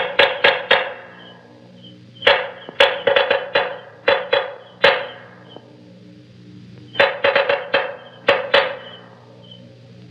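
Percussion music: three runs of quick, sharp clacking strikes with a short ring, separated by pauses, over a steady low hum.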